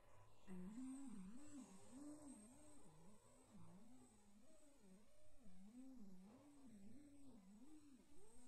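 A faint, hum-like tone whose pitch wobbles up and down about twice a second, over a thin steady high whine.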